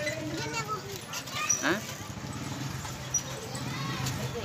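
Brief, fairly quiet bits of talk from a young child and others, a short phrase early on and a quick rising call about a second and a half in, over a steady low background hum.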